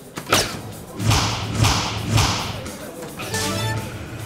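A soft-tip dart striking an electronic dartboard with a sharp hit about a quarter second in, scoring a single 15, followed by a run of electronic sounds from the dart machine.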